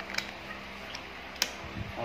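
Playing cards being set down and squared into piles on a tabletop: a few light clicks and taps, the sharpest about a second and a half in, followed by a soft low bump.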